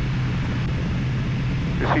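Steady cockpit noise of an Aero L-39 Albatros jet trainer in flight: its turbofan engine and the airflow over the canopy, a constant low hum under an even hiss.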